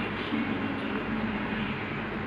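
Steady background rumble with a faint low hum, without clear clinks or knocks.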